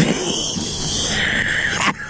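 A person's drawn-out cry of alarm on slipping on loose riprap rocks. It starts suddenly and lasts nearly two seconds.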